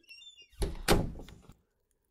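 A door creaking briefly and then shutting with a heavy thud about half a second in.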